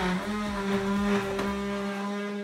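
Makera Carvera desktop CNC mill cutting an aluminum block with a high-feed five-flute end mill: a steady pitched spindle hum.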